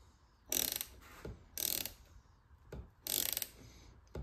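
Socket ratchet clicking in three short bursts, a second or so apart, as the handle is swung back between pulls while a nut is being loosened off a bolt.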